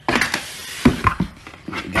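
Cardboard box packaging being handled and opened: a scuffing rustle as a lid is lifted, then a few short, light knocks of cardboard.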